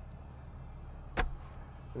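A single sharp plastic click about a second in, from the pickup's fold-down centre console being moved, over a low steady hum in the cab.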